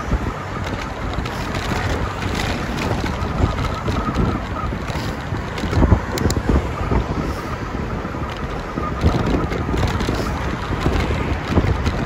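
Wind buffeting the microphone of a camera on a moving bicycle, a rough, uneven rush heaviest in the low end, with road noise underneath.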